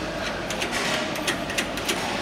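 Quick small metallic clicks and taps from hand work at the heat-wire terminal of a semi-automatic L-bar sealer, about six in a second and a half, over a steady hum.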